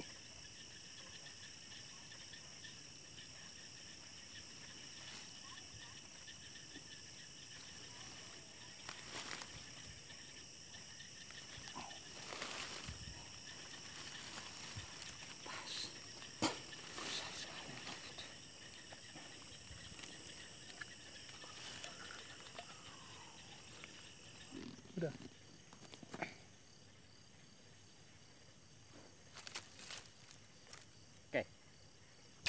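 Night insects, crickets among them, trilling steadily in several high, unbroken tones, with scattered rustles of leaves and grass being pushed aside. A few seconds before the end one of the trills stops.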